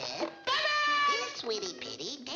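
A high-pitched cartoon character voice gives two drawn-out, meow-like cries, one about half a second in and another near the end.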